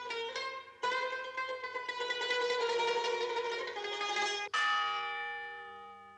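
Plucked-string music of the film's score: quick string notes, then a strong chord struck about four and a half seconds in that rings and slowly dies away.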